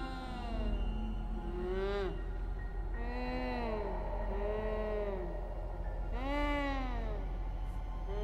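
Eerie horror-film sound design: a series of wailing tones that glide up and back down in arcs over a low steady drone.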